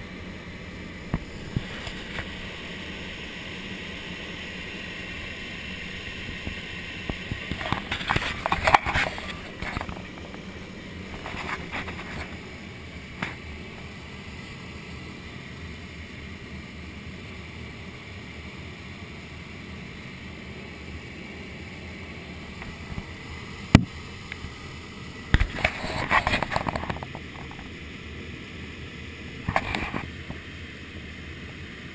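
Steady rush of air over the sailplane's canopy in gliding flight. Two short stretches of crackly noise come about eight seconds in and again near the end, with a few sharp clicks between.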